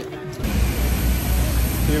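Wind buffeting a phone's microphone outdoors: a loud, even rushing noise with uneven low rumbling gusts that starts suddenly about half a second in.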